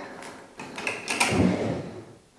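A wooden dresser drawer being pulled open, scraping and rattling as it slides, with a few knocks partway through.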